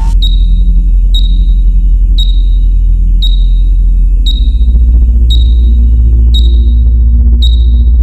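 Electronic soundtrack: a loud, deep bass drone with a high, sonar-like ping repeating about once a second.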